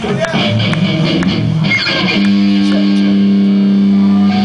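Live rock band on stage, electric guitar playing a few shifting notes and then holding one long sustained low note from about halfway through.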